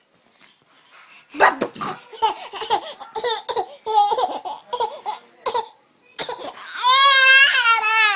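An infant laughing and babbling in quick, choppy bursts. Near the end comes a loud, long, wavering baby cry.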